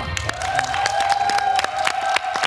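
Studio audience and panel applauding a correct answer, a dense run of irregular claps, over one steady held tone of the show's music.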